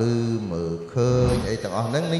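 A man's voice in long held syllables, chant-like rather than plain talk, with short breaks between phrases.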